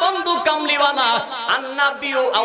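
Speech only: a man preaching in Bengali into a microphone.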